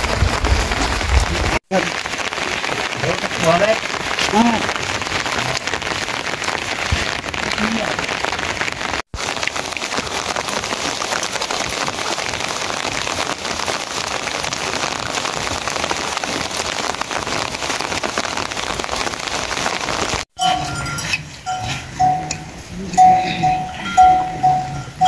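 Steady rain falling, an even hiss throughout. Near the end, after a cut, the rain drops away and a bell rings repeatedly, a bell on grazing cattle.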